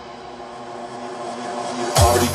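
Breakdown in a hard techno DJ mix: held synth tones with no kick drum, the bass dropping away about halfway through while a rising noise sweep swells toward the drop.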